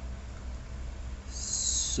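Steady low electrical hum. In the last half-second or so a drawn-out 'sh' hiss starts as a voice begins to say 'shǒujī'.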